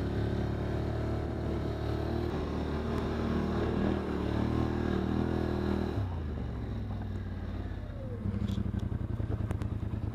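Polaris Sportsman 850 XP ATV's twin-cylinder engine running steadily under throttle, then easing off about six seconds in and settling to a low, pulsing chug near the end as the quad slows.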